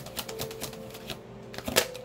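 A deck of tarot cards being shuffled by hand: a quick run of light card clicks and slaps that thins out after about a second, with one sharper slap near the end.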